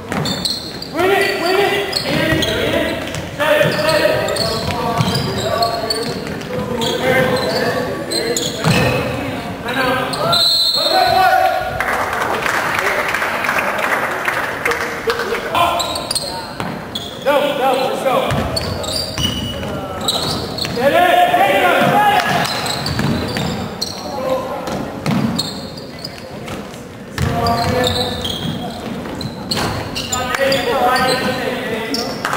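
Basketball game in a gym hall: shouting voices of players, coaches and spectators over a ball bouncing on the hardwood court. A swell of crowd noise comes about twelve seconds in and fades about three seconds later.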